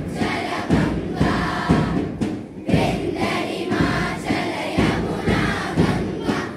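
A large group of voices singing together in unison, with a strong beat about once a second.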